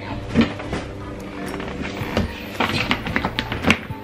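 Background music, with the grey plastic lid of a storage bin being set on and pressed down: a few sharp plastic knocks and clicks, the loudest about half a second in and just before the end.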